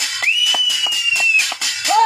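Several people clapping fast and rhythmically while one gives a long, slightly falling whistle, with a yell at the end: farmers clapping and whistling to drive monkeys off their crop.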